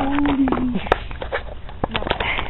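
A boy's voice holds one long, level note that ends about three-quarters of a second in, then a short laugh follows, with a few sharp taps on the asphalt.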